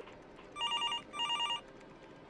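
Electronic telephone ringing twice: two short bursts of a warbling trill, about half a second each, with a brief gap between them.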